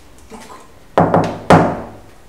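Two loud knocks on a door, about half a second apart, each with a short ringing tail.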